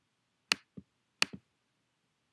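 Two sharp computer mouse clicks less than a second apart, each followed by a fainter, lower click.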